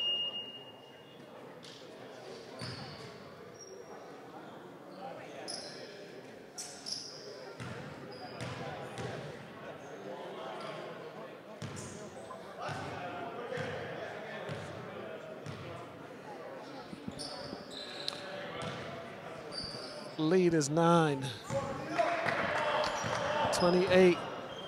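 A basketball bouncing on a hardwood gym floor in a large, echoing hall, with scattered voices of players and onlookers. The voices grow louder from about twenty seconds in.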